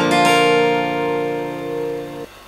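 Acoustic guitar, capoed at the third fret, strummed on a variant of the G chord near the start; the chord then rings on, slowly fading.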